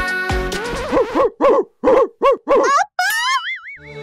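The end of a children's pop song, then a run of about five bouncy cartoon 'boing' sound effects with short gaps between them, followed by a rising, wavering whistle-like effect near the end.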